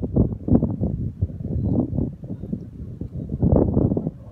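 Wind buffeting the microphone: an uneven low rumble that comes in gusts.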